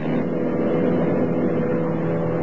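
Single-engine light aircraft's piston engine and propeller droning steadily in flight, holding one even pitch.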